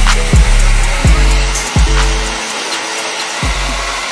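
Hand-held hair dryer blowing steadily on a wet wig, under hip-hop background music with deep bass notes that slide down in pitch.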